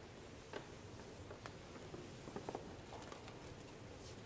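Faint room tone of a large church with scattered small taps and clicks of people moving about, and a quick run of three taps about two and a half seconds in.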